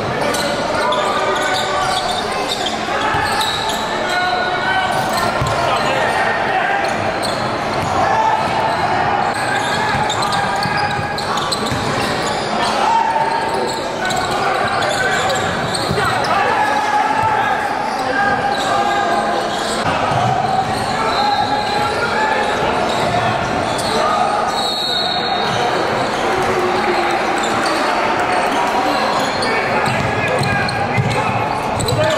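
Live sound of an indoor basketball game: many indistinct voices of spectators and players talking and calling out, with a basketball being dribbled, all echoing in a large gym.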